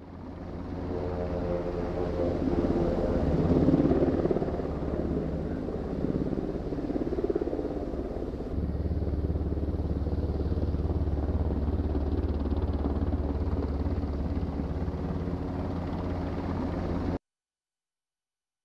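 Helicopter's engines and rotor running steadily as it comes in to land, with a strong low hum under the rotor noise. The sound changes a little past the middle and cuts off abruptly shortly before the end.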